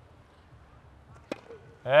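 Tennis racket striking the ball on a serve: a single sharp crack about a second in.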